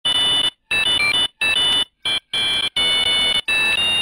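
High electronic beeping: about seven uneven bursts of two steady high tones over hiss, separated by short silences, a few bursts stepping up or down in pitch, like an alarm.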